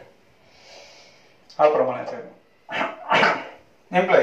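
Marker pen briefly scratching on a whiteboard, followed by a man's drawn-out spoken syllables.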